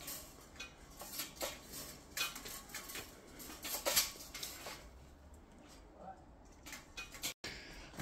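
Faint, scattered clicks, taps and rustles of handling as an electric guitar is held and moved about in front of the camera.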